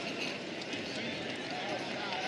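Indoor arena ambience: a low, even murmur of crowd and distant voices.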